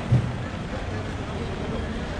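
Busy pedestrian street ambience: passers-by talking over a steady outdoor background. A brief low thump comes just after the start.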